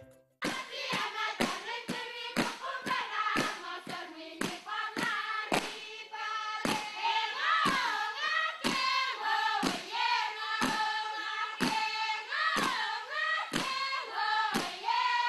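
A group of voices singing together in a chant-like melody over rhythmic hand claps about twice a second, starting about half a second in.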